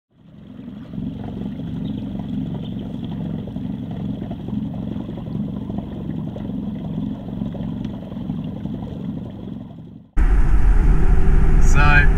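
A small boat's outboard motor running steadily, fading in at the start. About ten seconds in it cuts off suddenly to louder road noise inside a moving car, with a man starting to speak near the end.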